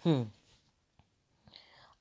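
A man's voice makes a short 'hmm' with falling pitch. A quiet pause follows, with a faint click about a second in.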